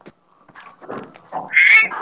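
A short, high-pitched, meow-like cry about one and a half seconds in, after scattered faint rustles.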